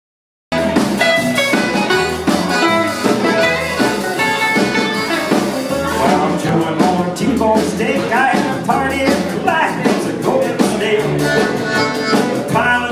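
Live band with upright bass and acoustic guitars playing an upbeat dance tune with a steady beat, starting abruptly about half a second in.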